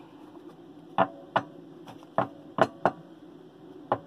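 Tarot cards being handled and the deck knocked on the table as it is gathered up: about six short, sharp taps over three seconds.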